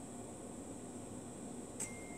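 Quiet room tone: a steady faint hiss with a thin high whine, and one brief click near the end.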